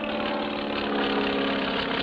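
Single-engine propeller plane engine running steadily with an even, unchanging pitch, as a cartoon sound effect.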